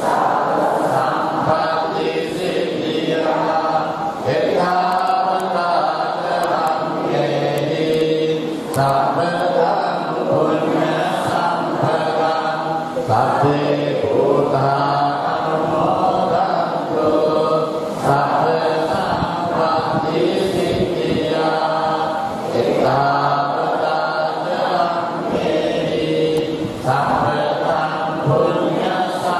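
A congregation chanting Buddhist prayers together in unison, many voices in a steady recitation that runs in phrases a few seconds long with brief pauses between.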